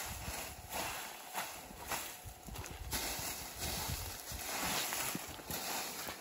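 Rake dragged through a heap of dried bean pods on concrete, in repeated rustling, scraping strokes about once a second, with light knocks from the pods and the rake.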